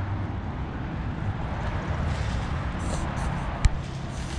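Steady low hum of motor vehicle traffic, with a single sharp click about three and a half seconds in.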